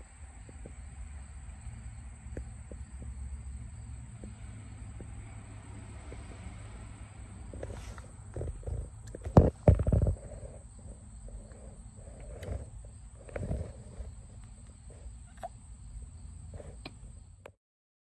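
Low steady rumble inside a car, with scattered knocks and bumps from a handheld phone. The loudest knocks come about nine to ten seconds in, and the sound cuts off suddenly just before the end.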